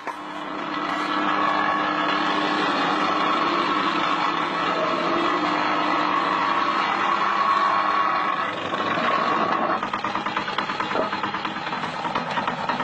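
An engine running steadily, changing near the end to a rapid, even pulsing.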